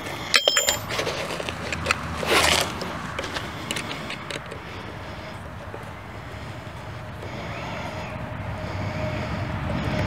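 Small metal clinks of a spanner, nut and screw as the loosened nylock nut is taken off the e-bike's headlamp mounting screw, mostly in the first second, with a short scrape about two seconds in. Under this runs a steady background noise that slowly grows louder toward the end.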